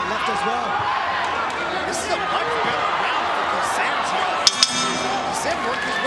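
Arena crowd shouting throughout, with two quick metallic clangs of the ring bell about four and a half seconds in that ring on briefly, marking the end of the round.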